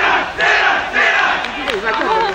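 A team of footballers in a huddle shouting together in unison: three loud group shouts in quick succession, like a team war cry.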